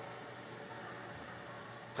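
Faint steady hiss of background room tone, with no speech.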